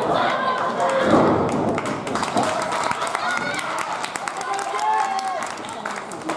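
Raised voices shouting during a women's pro-wrestling bout, over scattered short sharp claps and thuds.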